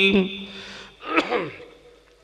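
A man's long chanted note breaks off at the start. About a second in comes a single short, loud vocal sound that sweeps quickly in pitch, like a gasp.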